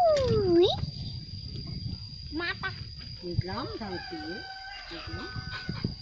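Rooster crowing, ending on a long held note in the second half.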